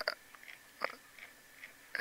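Quiet pause with a few faint, short clicks, one a little stronger just under a second in.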